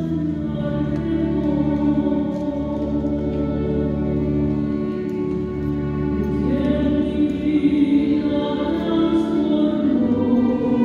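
Choir singing a slow communion hymn in long held notes, with sustained keyboard or organ-like accompaniment.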